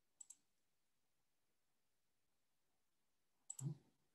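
Computer mouse clicks advancing a slide: two quick clicks just after the start, then near silence, then another pair of clicks near the end.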